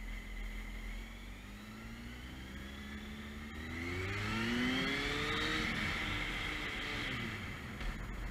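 Motorcycle engine pulling up through the revs as the bike accelerates, its pitch rising for a few seconds, then easing off and falling away about seven seconds in, over a steady rumble of wind and road noise.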